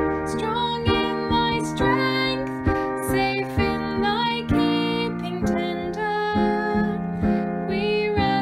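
A woman singing a slow hymn, accompanied by strummed acoustic guitar.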